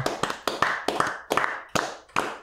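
Two people clapping their hands in an uneven patter of sharp claps, not in time with each other.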